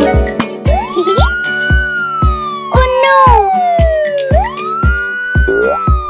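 Cartoon siren sound effect, a wail that rises quickly and then falls slowly, heard twice, over children's music with a steady beat.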